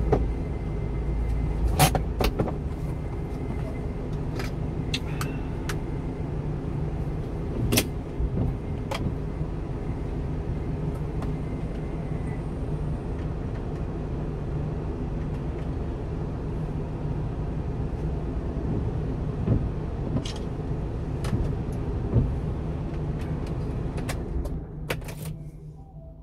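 A 1-ton refrigerated box truck's engine idling, heard from inside the cab as a steady low hum with a few sharp clicks and knocks. The hum cuts out about a second before the end.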